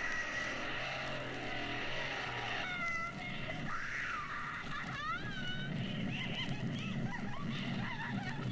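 A quiet non-musical passage: water sloshing under a few short animal calls that rise and fall in pitch.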